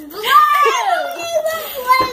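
A young girl's voice making one long, drawn-out wordless cry that starts high and slides slowly down in pitch.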